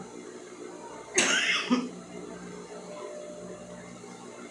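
A single cough about a second in: one short, sharp burst with a brief voiced tail.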